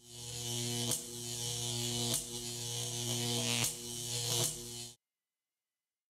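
Electrical buzz sound effect for a logo sting: a steady mains-like hum broken by four sharp crackles. It starts suddenly and cuts off about five seconds in.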